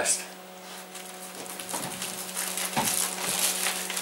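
Plastic freezer bag rustling and crinkling softly as it is handled, growing a little louder toward the end, over a steady low hum.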